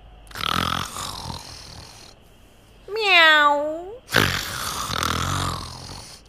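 A cat meowing once, about three seconds in, with a single call that dips and then rises in pitch. Two rushes of hissing noise, one near the start and one right after the meow, come on either side of it.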